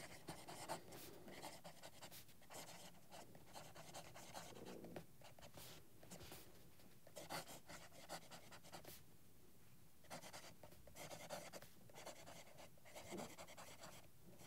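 Faint, irregular scratching of a steel broad fountain-pen nib on paper while writing a line of cursive; the nib writes on the dry side, with a bit of feedback.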